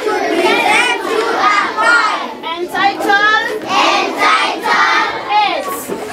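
A group of young children chanting a poem together in unison, many voices at once.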